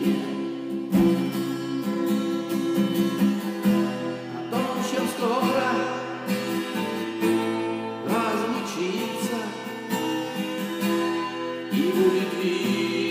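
Twelve-string acoustic guitar strummed in a steady rhythm, its chords ringing, with a man's voice singing over it in the middle and toward the end.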